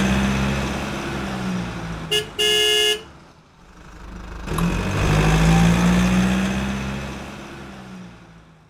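Car sound effect: an engine hum, a short car-horn toot and then a longer honk about two seconds in, after which the engine sound swells again and fades away near the end.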